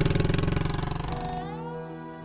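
Royal Enfield Bullet motorcycle's single-cylinder engine running at low revs with an even, rapid pulse as it rides off, fading out over the first second and a half while soft music with sustained tones comes in.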